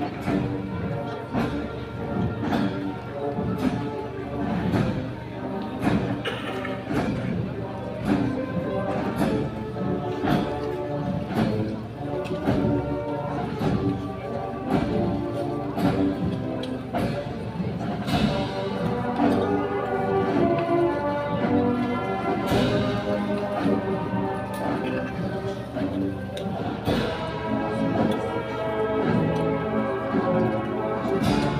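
Processional band playing a slow march, sustained brass chords over a steady drum beat.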